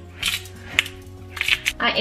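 Short rasping bursts of a disposable peppercorn grinder being twisted to crack black pepper onto a raw steak, heard over steady background music.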